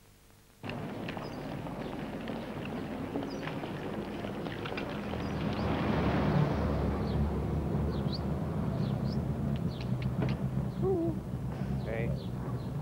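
Street sound: scattered footsteps and knocks, then a low vehicle engine rumble that swells about five seconds in and carries on.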